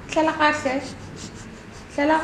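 A short wordless vocal sound: one voice going up and down in pitch for about half a second, shortly after the start.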